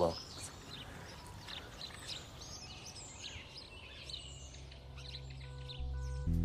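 Small birds chirping and calling, many short, high chirps one after another, with soft music fading in over the last two seconds.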